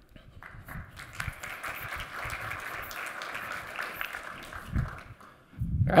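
Audience applause, a dense patter of many hands clapping that dies away after about five seconds.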